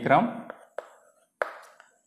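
Chalk knocking against a blackboard as a word is written: three short, sharp taps in the first second and a half, then a couple of fainter ticks.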